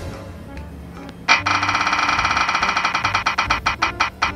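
Spinning prize-wheel sound effect: a rapid run of bright, ringing ticks starting about a second in, gradually slowing as the wheel winds down.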